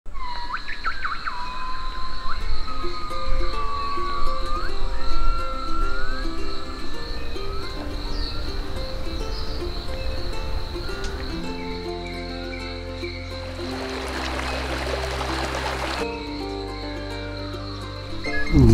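Instrumental music over forest ambience: a steady high insect drone throughout and gliding, whistled bird calls in the first few seconds. Deeper notes come in about halfway, and a hissing swell builds near the end and cuts off suddenly.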